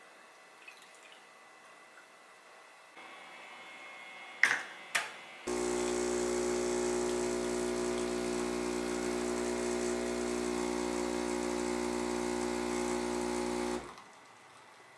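Two sharp clicks, then an espresso machine's pump hums steadily for about eight seconds as it pulls a shot, and cuts off suddenly.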